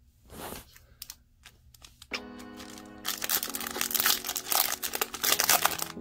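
A foil Pokémon card booster pack crinkling and tearing as it is opened by hand, with faint rustles at first. Background music comes in about two seconds in and runs under the crinkling.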